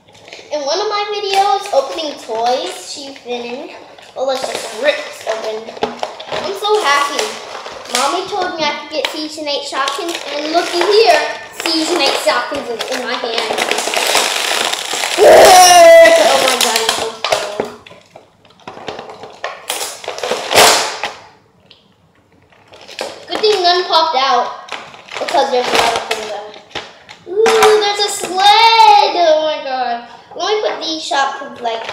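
A girl's voice talking and exclaiming without clear words, with crinkling plastic packaging handled in between; a loud high cry with a falling pitch comes about halfway.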